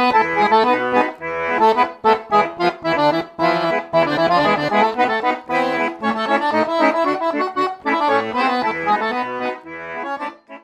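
Accordion playing a quick-moving melody over separate low bass notes, without a pause.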